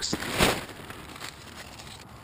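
A brief rustle about half a second in, then faint steady background noise.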